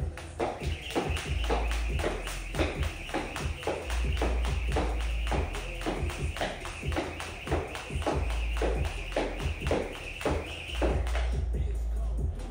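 Music with vocals playing, over a jump rope slapping the rubber floor mat in a steady rhythm of about three strikes a second that stops near the end.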